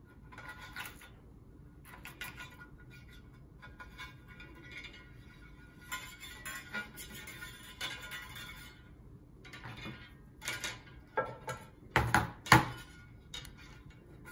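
Wire being threaded through the tie-down holes of an unglazed ceramic bonsai pot: light scraping and clicking of metal wire against the pot. A few sharper clinks come near the end, the loudest about twelve seconds in.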